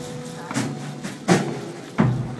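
Live band playing the opening of a song without vocals: a low drum thud about every three-quarters of a second over low held notes that ring on.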